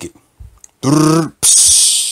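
A man imitating a drum rimshot with his mouth, "ba-dum-tss": a couple of soft ticks, a short voiced "dum" about a second in, then a loud hissing "tss" in place of the cymbal crash.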